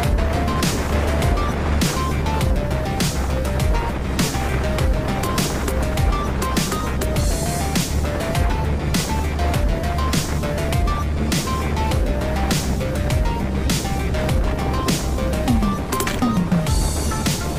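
Background music with a steady drumbeat, a bass line and a melody of short notes.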